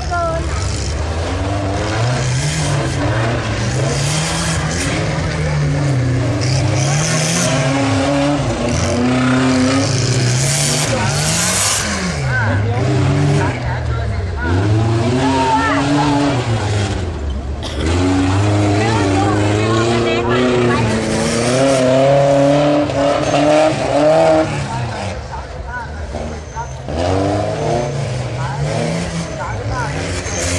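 Off-road 4x4 engines revving up and dropping back again and again as the trucks drive through a dirt competition course.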